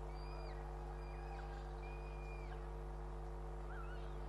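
Faint bird calls: three or four short, level notes of about half a second each, each ending in a drop in pitch, and a small rising note near the end, over a steady electrical hum.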